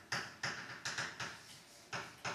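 Chalk on a chalkboard writing symbols: a quick series of short taps and scratches, about five strokes in two seconds.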